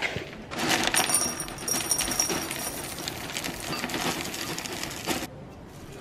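A dense rattling clatter of many small hard pieces, with faint high ringing, that stops suddenly about five seconds in.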